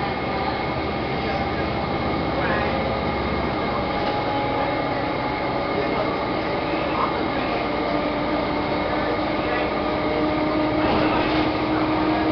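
Interior of a city transit bus cruising at speed: a steady drone of engine and road noise with several steady whining tones running through it.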